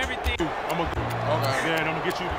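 Men talking on a football sideline, heard over background music with low, held bass notes.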